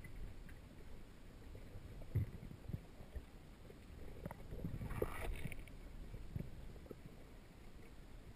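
Muffled underwater noise picked up by a camera held below the surface: a faint low rumble with a few soft knocks, the clearest about two seconds in, and a brief hiss about five seconds in.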